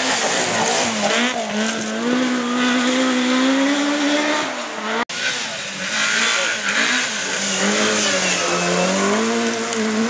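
Rally car engines revving hard on a gravel forest stage. First a Mk1 Ford Escort rises and falls through the gears, then, after a sudden cut about halfway, a Vauxhall Corsa rally car revs as it slides past, spraying gravel.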